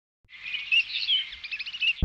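Small birds chirping in quick, high twittering phrases, starting about a third of a second in.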